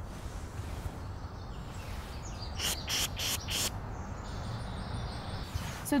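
A birder pishing to draw birds in: four or five short, quick 'pssh' hisses about two and a half seconds in. Faint birdsong runs underneath.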